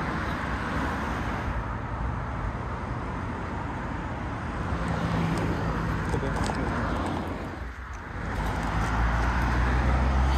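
Road traffic on a busy dual carriageway: a continuous mix of car tyre and engine noise. It swells about five seconds in, dips briefly near eight seconds, then builds again with a deeper rumble near the end.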